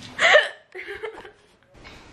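A young woman's hiccup: one short, sharp vocal catch about a quarter second in, followed by a fainter vocal sound, with her hiccups still going.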